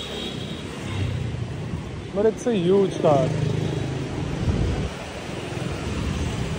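City street traffic: engines of passing cars and motorbikes, a steady low hum with a rumble, plus a brief voice about two seconds in.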